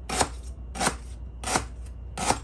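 Kitchen knife slicing a lemongrass stalk into rounds on a plastic cutting board: three sharp knocks of the blade meeting the board, evenly spaced about two-thirds of a second apart.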